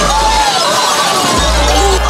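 Glassware and dishes crashing and shattering as they are swept off a banquet table, over music with deep bass notes.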